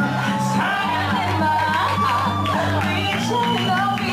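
A woman singing live into a microphone over a backing track from the DJ, with a steady bass line under the melody.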